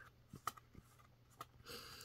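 Faint handling sounds from a cardboard board book's spin wheel turned by hand: a few soft, scattered clicks and light rubbing, very quiet.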